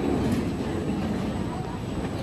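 Steel roller coaster train running along its track through a loop, a steady noise with voices underneath.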